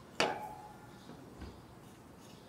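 A soaked cedar plank set down on a hot grill grate: one sharp wooden clack about a quarter second in, then a softer low knock a little over a second later.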